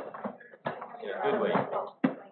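Indistinct conversational speech: voices talking with no clear words.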